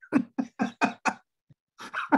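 A man laughing: a quick run of about five short bursts of laughter in the first second, then two more bursts near the end.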